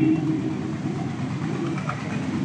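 A pause in a man's speech over a public-address microphone, leaving a low, steady background rumble that slowly fades.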